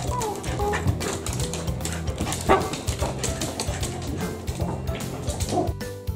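Background music with a steady beat, over which a Cavalier King Charles Spaniel gives one short bark about halfway through and a brief rising whine near the end.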